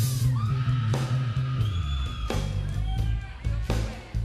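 Live hard-rock band playing an instrumental passage: a busy electric bass line up front, with drum and cymbal hits every second or so and sustained higher notes above.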